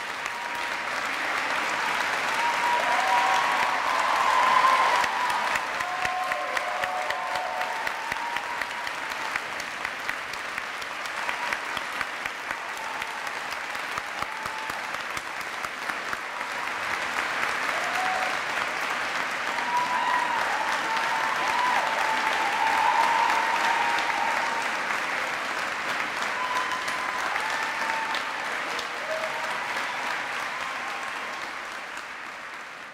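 Audience applauding steadily, swelling louder twice, with a few cheers over the clapping at the swells.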